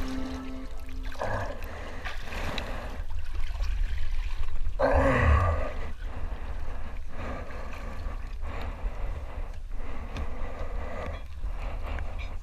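Seawater splashing and streaming off a swimmer climbing a wooden boat ladder out of the sea, in uneven surges, with a short low grunt of effort about five seconds in.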